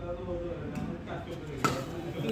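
A single sharp badminton racket strike on a shuttlecock about three-quarters of the way through, over low background talk.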